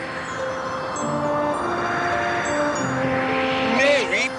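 A rushing whoosh sound effect swells and fades for the umbrella-borne flight, over soft music with held notes. Near the end come quick sliding pitch sweeps.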